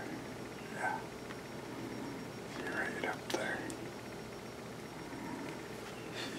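Hushed, whispered words from a man, in short snatches about a second in and again around three seconds in, with a single sharp click a little after three seconds.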